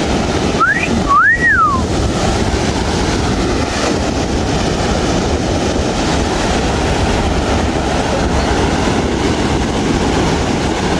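Surf breaking on a sandy beach, with wind on the microphone, as a steady rushing noise. About a second in, someone gives a two-note whistle: a short rising note, then a longer one that rises and falls, like a wolf whistle.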